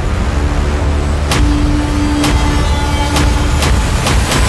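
A heavy vehicle engine's low, steady rumble, with sharp hits about once a second and a held musical tone, mixed with background music.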